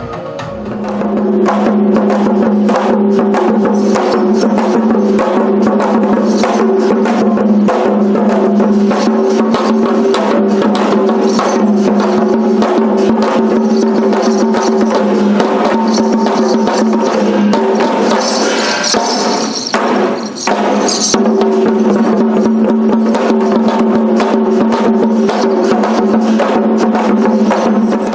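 Fast, rhythmic drumming on drums slung at the players' sides, over a steady low drone. The drumming breaks off briefly about twenty seconds in.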